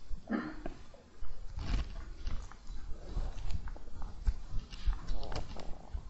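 Irregular low rumbling and rustling noises, with a short soft voice-like sound just after the start.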